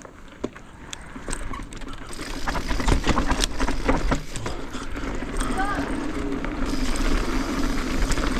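Mountain bike ridden fast down a rocky dirt trail: tyres rolling over dirt and loose stones, with many sharp clicks and rattles from the bike and a steady low rumble, getting louder from about two seconds in as speed builds.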